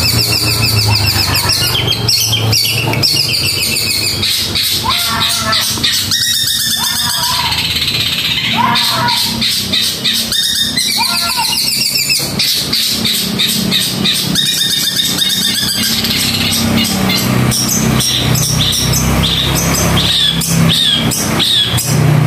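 Caged long-tailed shrike (cendet) singing a fast, dense run of chattering notes and trills, with rising-and-falling notes in the middle and quickly repeated high notes near the end. This is the fast, tightly packed song ('speed rapat') that cendet keepers call the 'kuntilanak' voice.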